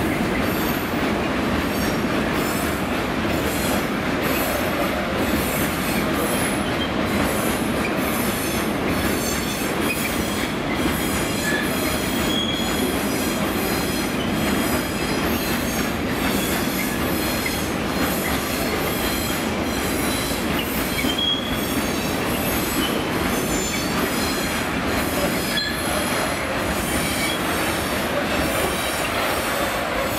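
Freight train of covered wagons rolling past, wheels clicking steadily over rail joints, with several brief high flange squeals.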